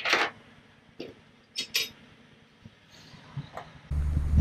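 Steel seat-mounting hardware (washers and bolts) clinking against metal seat brackets on the van's metal floor as it is set in place: a sharp clink at the start, then a few lighter clinks, two of them close together, and some faint ticks toward the end.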